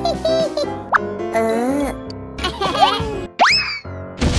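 Playful children's background music with cartoon sound effects and squeaky gibberish cartoon-character voice sounds; a fast, sharply rising whistle-like glide comes about three and a half seconds in.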